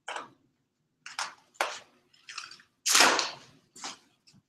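Large sheet of brown masking paper being pulled off a painting and gathered up: a series of short paper rustles and crackles, the loudest and longest about three seconds in.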